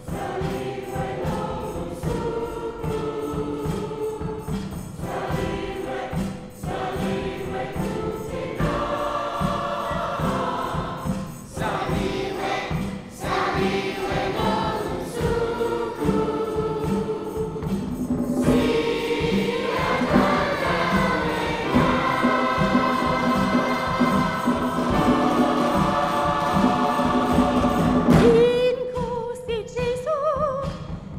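Choir singing a Christmas worship song with an orchestra over a steady beat. Near the end the full choir and band drop away and a lone woman's voice sings on.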